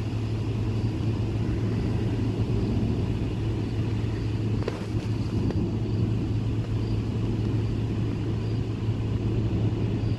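Steady low rumble, even throughout, with one brief click about halfway through.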